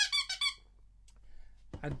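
A quick run of short, high-pitched squeaks, about six a second, which stops just over half a second in.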